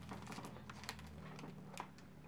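A few faint, light clicks from hands handling the pages of a hardcover picture book, over a low hum that stops just over a second in.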